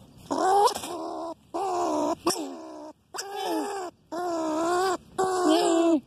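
An animal caught in a wire cage trap giving five drawn-out, wavering cries of about a second each, with short breaks between them. One sharp click about two seconds in.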